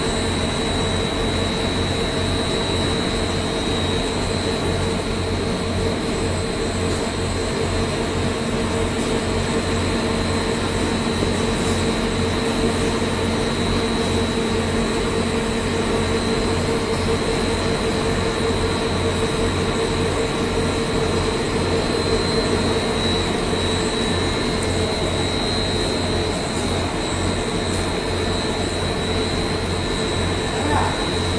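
Cable extrusion machinery running steadily: a constant mechanical drone with a steady hum and a high, even whine, unchanging throughout.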